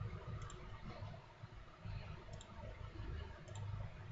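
A few faint computer mouse clicks, short and spread out, over low background noise.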